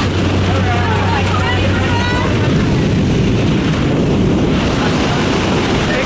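Loud, steady rush of wind and aircraft engine noise through a jump plane's open door. A low engine hum carries under it for the first couple of seconds. Voices call out over the noise in the first two seconds.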